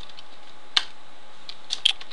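A few computer keyboard keystrokes while a formula is typed, sharp separate clicks with the loudest about three-quarters of a second in and two close together near the end.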